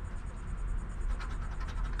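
A coin scraping the coating off a scratch-off lottery ticket in a run of short, faint strokes, mostly in the second half, over a steady low hum.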